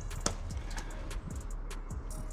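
Scattered light clicks and rustles of hands handling a just-caught fish and tackle, with one sharper click about a quarter second in, over a low steady rumble.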